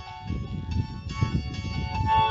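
Background music: held instrumental notes over a low, pulsing beat.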